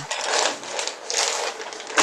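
Irregular rustling, clattering noise picked up by a call participant's open microphone and heard over the video-call audio, with no speech in it.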